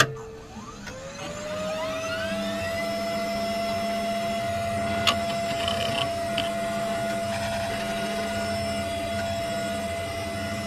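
An electric motor switching on with a thump and spinning up in a rising whine that levels off after about two seconds into a steady hum with several held tones. A sharp click comes about five seconds in.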